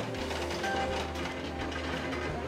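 Arcade game noise: faint electronic game music over a steady low hum, with plastic balls rattling down through the pin field of a Pearl Fishery ball-drop game.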